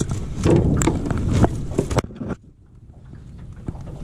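Landing net with a freshly netted largemouth bass knocking and rattling against the hull of an aluminium jon boat: a quick, busy run of knocks for about two seconds that cuts off abruptly halfway through.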